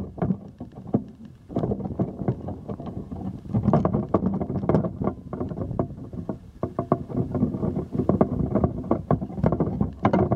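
Handling noise from a camera pole as it is moved about: dense, irregular rattles, clicks and knocks, quieter at first and louder from about a second and a half in.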